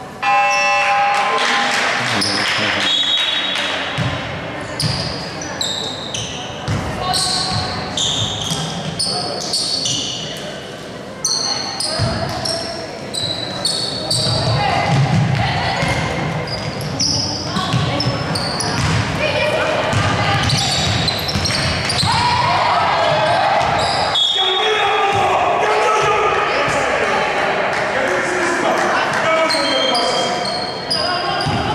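Basketball bouncing on a hardwood gym floor during play, with players' and coaches' voices calling out, all echoing in a large sports hall.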